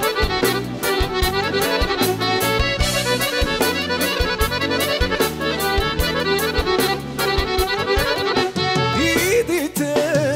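Live Balkan folk band playing an instrumental passage, with accordion carrying the melody over a steady drum beat.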